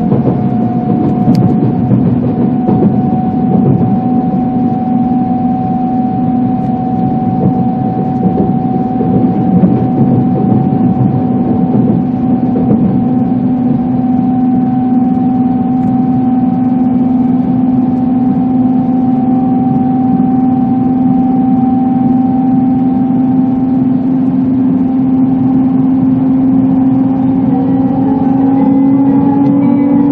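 Inside an E2 series Shinkansen car pulling away and gathering speed: the steady whine of the traction motors, two tones climbing slowly in pitch, over the loud rumble of running noise.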